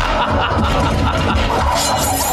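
Film fight-scene soundtrack: continuous background music with a sharp sound effect near the end.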